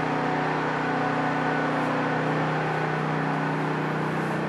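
A steady machine hum, a motor or fan running without change, with a low drone and an even hiss.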